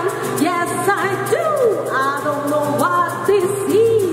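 Live acoustic pop-soul performance: a woman singing with sliding, bending notes over a strummed acoustic guitar, with a tube shaker keeping a steady rhythm of short high ticks.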